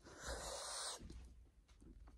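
A person's soft breath, lasting just under a second, then near silence.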